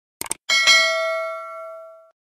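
Subscribe-button sound effect: a short mouse click, then a bright notification-bell ding that rings out and fades away over about a second and a half.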